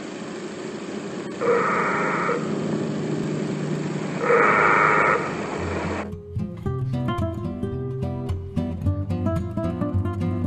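Two short blasts of a railway level-crossing signal's warning horn, each just under a second and a few seconds apart, over the steady hiss of an old film soundtrack. About six seconds in, acoustic guitar music takes over.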